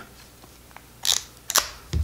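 Lomomatic 110 pocket film camera clicking as it is handled: two short, sharp mechanism clicks about half a second apart.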